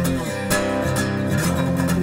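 Acoustic guitar playing alone, with a fresh strum about half a second in and notes ringing on after it.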